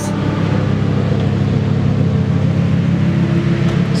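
Lamborghini Huracán Performante's naturally aspirated V10 idling steadily as the car rolls slowly up at low speed.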